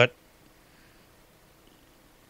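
A man's speaking voice cuts off at the very start, followed by near silence: the faint, steady noise floor of the recording during a pause in speech.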